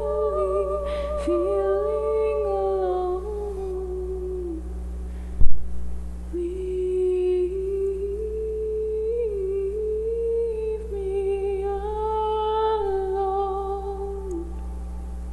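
A woman's voice humming a slow, wordless melody in long held notes, with a pause near the middle, over a steady low drone. A single sharp thump about five seconds in is the loudest sound.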